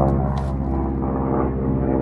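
Airplane flying overhead: a steady, droning hum made of several pitched tones that holds level throughout.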